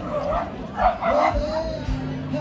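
A dog barking a few times in quick succession, then a short whine.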